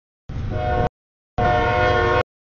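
Freight locomotive horn sounding for a grade crossing over the train's low rumble, heard as two loud stretches, the second louder. The sound cuts off abruptly to dead silence between and after them.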